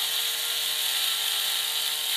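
Small cordless 4V lithium screwdriver running steadily on a low torque setting, driving a neck screw through the chrome neck plate into a Stratocaster's neck heel, a steady whine.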